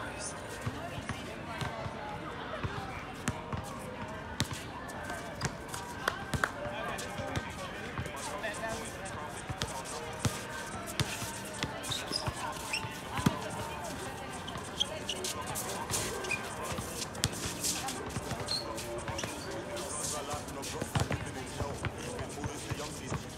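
Basketball being dribbled and bouncing on an outdoor hard court during a pickup game, irregular bounces throughout, with players' voices in the background.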